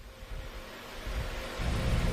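Background noise of a remote video link between two speakers: a steady hiss with a faint hum, and a low rumble that grows louder after about a second and a half.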